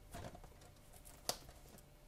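Faint crinkle of plastic shrink-wrap on a sealed trading-card box as it is turned over in the hands, with one sharp tick a little over a second in.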